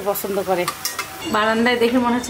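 A woman talking over a flat metal spatula stirring vegetables in a metal karahi, with a few sharp scrapes against the pan.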